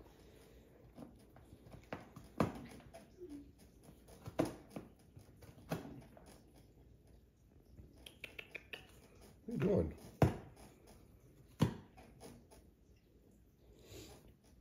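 Calico cat gnawing and pawing at a cardboard box: scattered crunches and scrapes, with a quick run of small clicks about eight seconds in.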